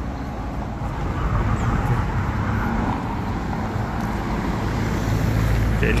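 City street traffic: a steady rumble of cars passing on the road, growing a little louder toward the end.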